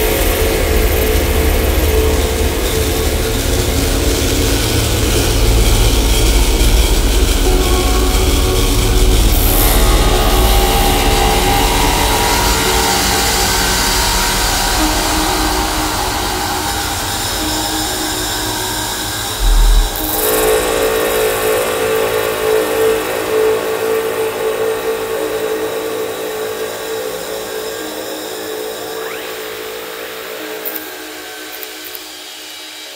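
Ambient noise music: a dense droning texture of steady tones over a heavy low rumble. About two-thirds of the way in there is a short low thud, after which the rumble drops away and the drone slowly fades.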